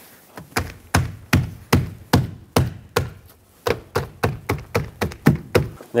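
A gloved hand taps a new rubber upper door weatherstrip seal down onto its track along the top of a Dodge Ram 2500 cab, seating the seal's metal-reinforced clip channel onto the lip. It is a steady run of short, dull taps, about two to three a second, with a brief pause about halfway through.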